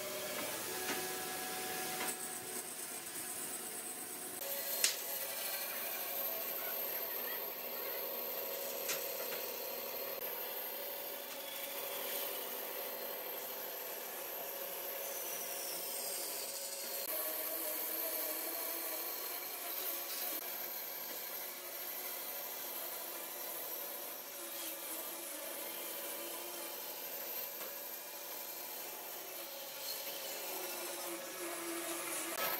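Band saw running and cutting through a bark-covered log, a steady sawing hiss throughout, with a couple of brief clicks in the first ten seconds.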